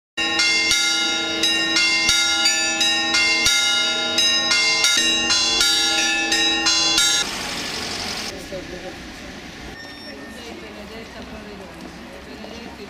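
Church bells ringing a rapid peal, about three strikes a second, stopping abruptly about seven seconds in. A much quieter background follows.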